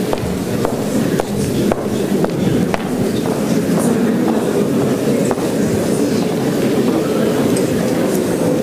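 Steady murmur of audience chatter filling a large hall, with footsteps on the wooden floor about twice a second during the first few seconds.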